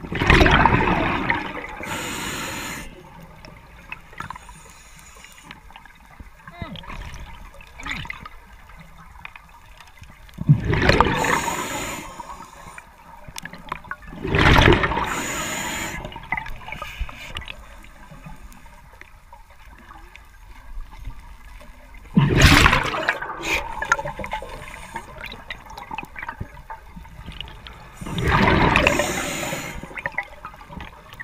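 Scuba diver breathing through a regulator underwater: a loud rush of exhaled bubbles about every four to eight seconds, with quieter stretches between breaths.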